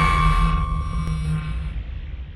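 The fading tail of an intro logo sting: a low rumble with a few held tones dying away.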